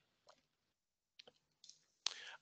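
Near silence with a few faint short clicks, about a second apart.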